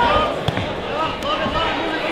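Spectators and cornermen calling out in a hall around a boxing ring, the voices overlapping and unintelligible, with one sharp thud about half a second in.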